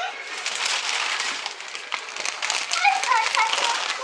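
Crinkly packaging rustling and crackling as it is pulled out of a toy's cardboard box, with a brief high-pitched child's voice about three seconds in.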